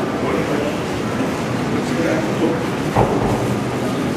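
Indistinct murmur of voices over steady room noise, heard through the hall's microphone. A single low thump comes about three seconds in.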